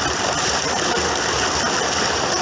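Water gushing steadily from an irrigation pump's spiral hose outlet into a channel, with the pump's engine running underneath.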